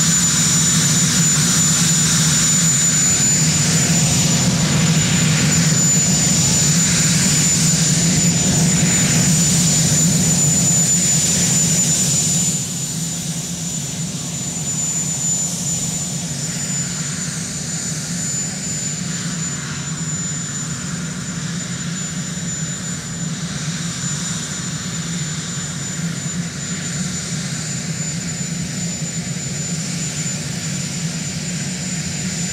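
Marine One, a Sikorsky VH-3D Sea King helicopter, sitting on the ground with its turbine engines running: a steady engine noise with a constant high-pitched turbine whine. The sound drops suddenly to a lower level about twelve seconds in and then holds steady.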